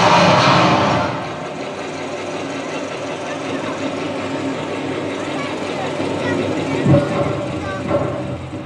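Soundtrack of a projection-mapping show over outdoor loudspeakers: a loud whooshing swell in the first second, then a steady machine-like rumble, mixed with the voices of a talking crowd. There is a single thump about seven seconds in.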